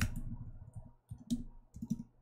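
Computer keyboard keystrokes: a sharp key click at the start, then a handful of scattered key presses with short pauses between them as code is typed.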